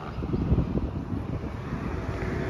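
Wind gusting across the microphone: an uneven low rumble with irregular buffeting.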